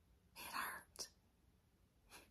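A crying woman's breath, about half a second long, drawn in through nose and mouth, followed by a single small click of the lips.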